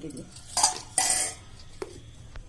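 Steel kitchen bowls and a plastic mixer-grinder lid being handled: two short bursts of clattering, then a single sharp click near the end.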